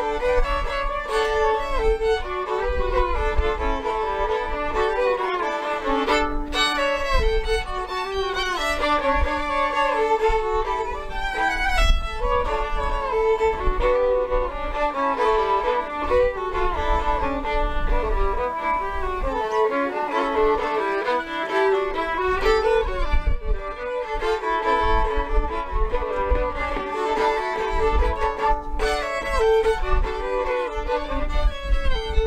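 Two fiddles playing a traditional tune together, a continuous lively melody, with a low rumble underneath that rises and falls.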